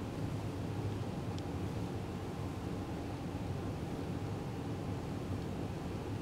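Steady low background rumble of room noise, with one faint tick about a second and a half in.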